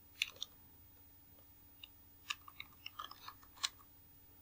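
Computer keyboard being typed on: a couple of key clicks near the start, then a quick run of keystrokes about two seconds in.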